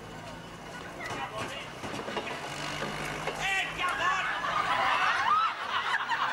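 Laughter from a studio audience builds from about halfway through and grows louder toward the end, over the steady low hum of a double-decker bus's diesel engine idling at the stop.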